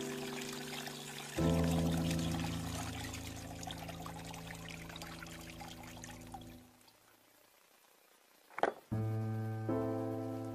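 Battery acid pouring out of the open cells of a tipped lead-acid car battery into a plastic bucket, a trickling splash that fades out about six and a half seconds in. Background music of long held chords plays throughout. It drops away briefly near the end and then resumes.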